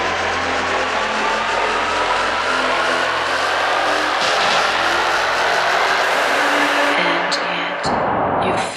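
Hard techno remix in a breakdown without the kick drum: a noisy synth riser sweeps slowly upward in pitch over held synth notes. It thins out and drops away near the end.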